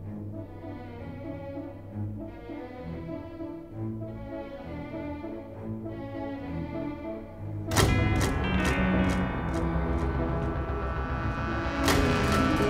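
Orchestral film score: soft, repeated swelling chords, then about eight seconds in a sudden loud full-orchestra entry with a run of sharp percussive strikes, and another strong hit near the end.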